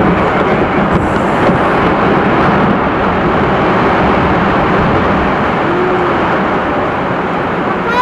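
Ice breaking off the Perito Moreno Glacier's front and crashing into the lake: a loud, steady roar of falling ice and churning water.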